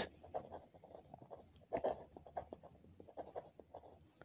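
A ballpoint pen writing on ruled notebook paper: faint, irregular scratching of the pen strokes as words are handwritten.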